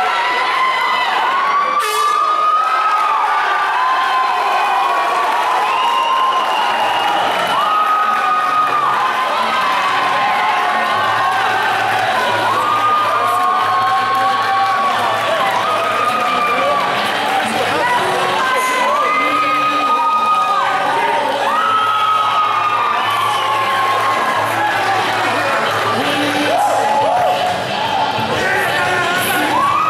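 Crowd of spectators cheering and shouting, many voices at once, with long held shouts standing out over a steady din.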